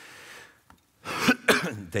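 A man clearing his throat: a soft breath, then two short, rough, loud bursts about a second in.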